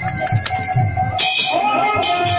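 Kirtan music without voice: a barrel drum beating low strokes, bright bell-like metallic ringing that grows louder about a second in, and a held keyboard note.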